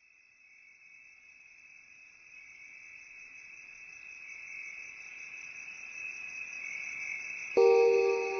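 A steady, high-pitched chirring like a cricket chorus, fading in from silence and growing louder. Near the end, soft music with bell-like mallet notes comes in suddenly.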